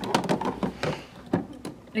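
Clear plastic water tank of a Krups EA9000 superautomatic espresso machine being set down and pushed into its side compartment: a few light plastic knocks and clicks, the loudest at the start.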